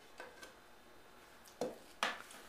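Faint clicks, then a short knock about one and a half seconds in, as a glass candle holder with a red pillar candle in it is handled and set down on a table.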